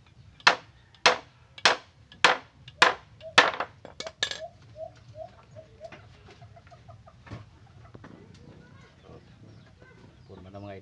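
Claw hammer driving nails into wooden chair slats: about seven sharp blows, roughly two a second, in the first four and a half seconds, then a single lighter blow later.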